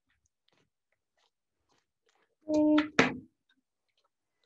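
Scissors cutting rigid plastic packaging: faint small snips, then about two and a half seconds in a brief squeal of the plastic under the blades followed by a sharp crack.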